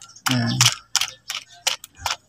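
A hungry rooster pecking feed pellets from a plastic dish: a run of quick, sharp taps of its beak on the plastic, about four or five a second.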